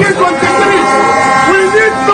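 A horn sounds a long steady note under a man talking on a busy street.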